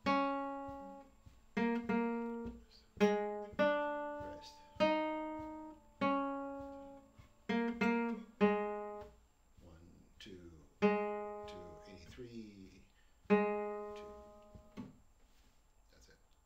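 Nylon-string classical guitar playing short plucked chords and notes, each left to ring and decay, with rests between them; about a dozen attacks, the last ringing out a couple of seconds before the end. A quiet voice is heard faintly in a couple of the gaps.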